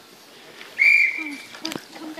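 One short, steady, high-pitched whistle note about a second in, followed by a sharp click.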